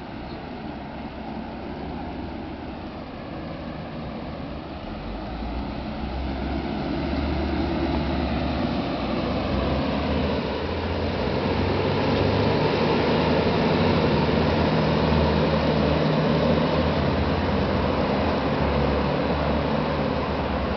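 Steady street traffic rumble heard from a moving bicycle, with wind buffeting the microphone. It grows louder over the first half and then holds steady.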